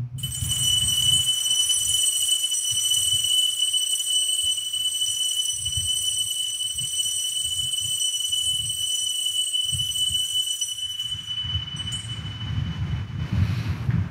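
An altar bell struck once at the elevation of the host during the consecration, one clear high ring that holds for about eleven seconds and then fades, over a low rumble.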